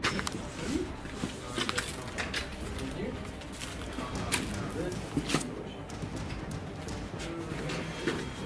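Footsteps crunching over rubble and broken debris, with irregular sharp clicks and knocks, under low, muffled voices.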